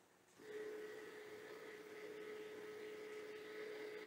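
Revopoint dual-axis turntable's motor whining faintly and steadily as it tilts the platform back level to its home position, starting about half a second in and stopping at the end.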